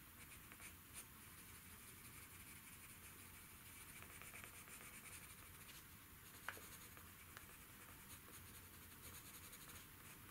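Coloured pencil shading lightly on paper: a faint, steady scratching, with one small sharp tick about six and a half seconds in.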